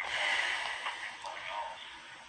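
Faint, thin voice of the caller on the other end, leaking from a mobile phone's earpiece held to the listener's ear, fading towards the end.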